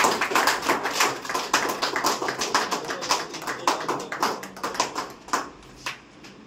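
A small group of people clapping, the applause thinning out to a few last claps near the end.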